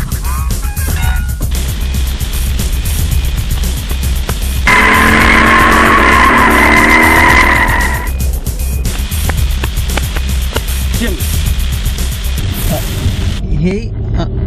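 Car tyres squealing loudly for about three seconds, starting about five seconds in, as a Toyota Starlet hatchback pulls away. Background music with a steady low beat plays underneath throughout.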